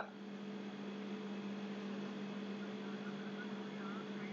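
Steady low electrical hum over a faint even hiss.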